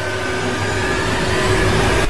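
Sound effect for an animated subscribe-button outro: a steady, noisy rushing swell that grows a little louder, cut off by a sudden hit at the end.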